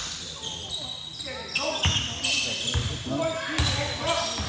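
Basketball dribbled on a hardwood gym floor: a few bounces a little under a second apart in the second half, with players' voices and shoe squeaks around them.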